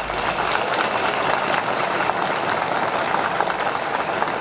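A crowd clapping, a steady dense patter of many hands held at an even level.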